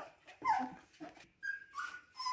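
Siberian husky puppies whimpering: a few short, high whines, one falling in pitch and a later one rising.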